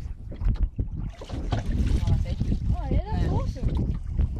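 Wind rumbling on the microphone aboard a small boat, with scattered knocks and handling noise as a landing net is lifted from the water; a voice is heard in the second half.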